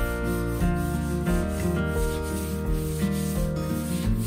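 Background music with shifting chords over repeated rasping strokes of a hand sanding block rubbing down dried filler patches on a wall.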